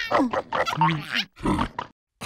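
A cartoon larva character's nonsense vocal noises: a quick run of short, pitched grunts and squeals whose pitch bends up and down.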